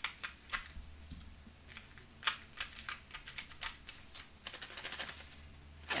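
Light, scattered clicks and short rattles of M&M candies knocking against a clear plastic shaker dome and each other, with a denser run of quick clicks about five seconds in.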